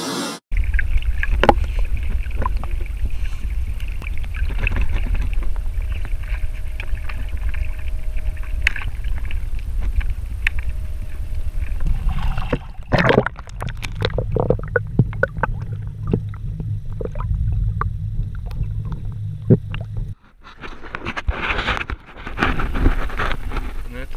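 Water washing against a small electric spearfishing float and wind buffeting the camera microphone as the float moves across the water: a steady deep rumble, with many splashes and knocks from about halfway through. The sound drops out briefly near the end, then resumes.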